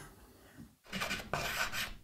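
Chalk scratching across a blackboard as a phrase is written out: a faint scrape, then about a second of quick scratchy strokes starting about a second in.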